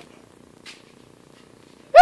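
Quiet room noise with a faint steady low buzz and a soft tick about two thirds of a second in, then a child's voice breaking in loudly at the very end.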